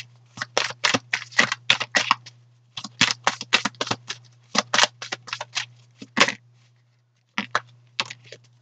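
Tarot deck being shuffled by hand: quick card slaps about five a second, in three runs of roughly two seconds each, then a short few near the end.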